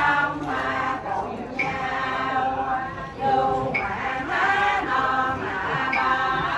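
A group of women singing a slow prayer chant together, holding long notes with short breaths between phrases.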